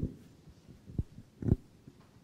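Handling noise from a handheld microphone: a loud low thump right at the start, then two more bumps at about one second and a second and a half as the mic is moved.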